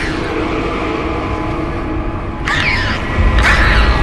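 Trailer sound design: a monster's shrill, wavering shrieks, once about two and a half seconds in and again near the end, over a low droning horror score. A deep rumble swells in during the last second.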